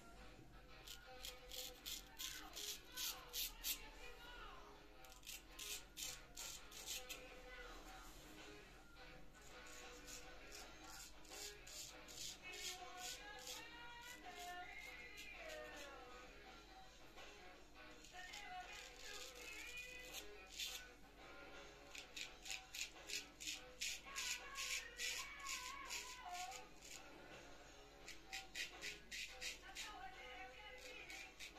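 Straight razor scraping through lathered stubble: quick rasping strokes in bursts of a few seconds with short pauses between. Faint music plays in the background.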